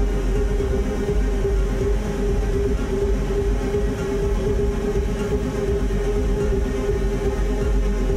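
Live electronic noise music: a loud, dense, unbroken drone with one strong held tone in the middle and heavy sub-bass beneath, without a beat.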